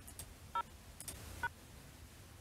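Touch-tone (DTMF) phone keypad tones: two short two-note beeps about a second apart, with faint clicks between, as a number is keyed into a conference call-in line.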